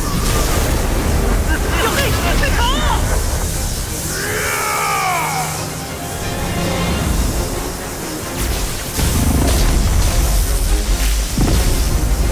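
Animated battle sound effects: a continuous deep rumble of energy blasts and explosions under dramatic score music. Two vocal cries sweep in pitch about three and five seconds in, and the low rumble swells again from about nine seconds.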